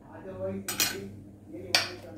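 A plastic spoon knocking against a steel mixing bowl twice, about a second apart, while rose water is mixed into gram flour.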